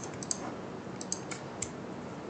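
Several light, irregularly spaced clicks of computer keyboard keys and a mouse button over a faint steady hiss.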